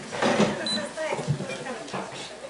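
Indistinct talk: voices speaking quietly, too unclear to make out words.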